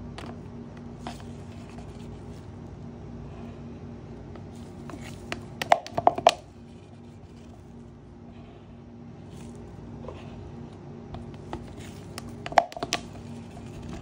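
Plastic cups and a measuring jug clicking and knocking as epoxy resin is poured into the cups: a short cluster of clacks about six seconds in and another near the end, over a steady low hum.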